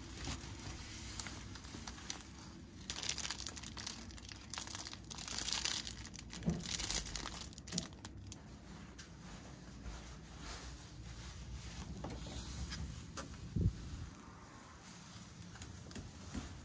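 Fabric and bag rustling and crinkling as a coat and a black mesh bag are handled and pushed into a locker, loudest in the middle stretch, with a few light knocks and a dull thump near the end.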